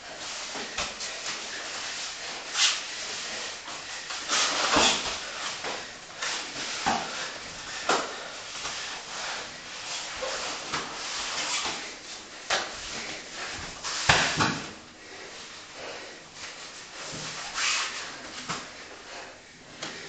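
Grapplers' bodies scuffing, rubbing and bumping on foam floor mats in a small room, with irregular shuffling noise and a few louder thumps, the biggest about 14 seconds in.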